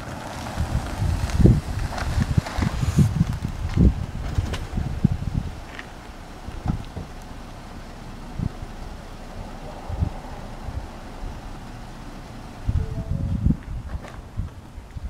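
Wind buffeting a handheld camera's microphone outdoors: irregular low rumbling gusts, heaviest in the first few seconds and again near the end, with a steadier rush between.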